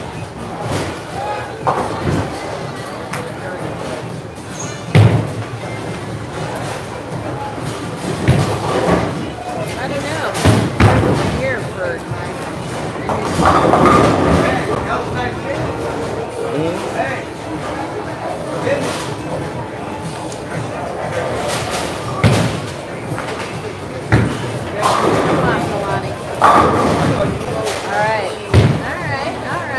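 Bowling alley ambience: bowling balls and pins striking with several sharp thuds and crashes, over background chatter and music in a large, echoing hall.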